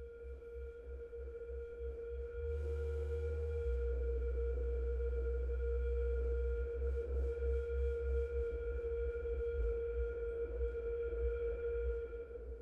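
Percussion ensemble holding a steady, bell-like mid-pitched tone with fainter overtones over a soft, flickering low rumble. A short burst of hiss comes in about three seconds in, and faint quick ticking follows in the second half. The players are realising a score cue for a soft blend of sine-like tones and noise.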